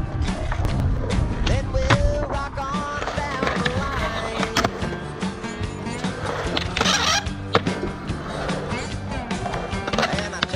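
Skateboard wheels rolling on concrete, with sharp clacks of the board striking the ground, mixed with a music track.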